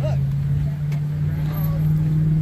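A steady low hum that holds one pitch without change, with a short fragment of a voice just at the start.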